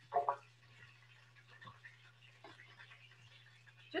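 Quiet kitchen sounds: a brief murmur from a voice just after the start, then a few faint knocks of handling kitchenware, over a steady low hum.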